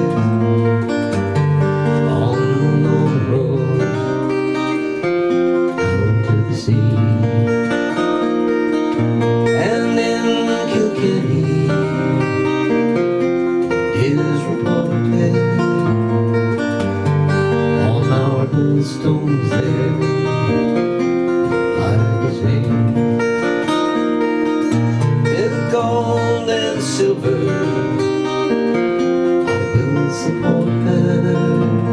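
Jumbo cutaway steel-string acoustic guitar playing a folk tune, chords picked steadily with the bass notes changing every second or two.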